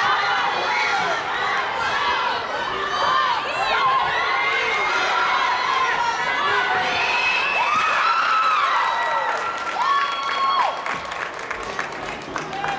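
Ringside spectators at a taekwondo sparring bout shouting and cheering, many voices, children's among them, yelling over one another. The shouting eases about a second before the end.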